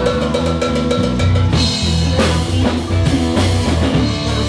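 Live rock band playing loudly: a drum kit to the fore with bass drum and snare hits, over a bass guitar and electric guitars.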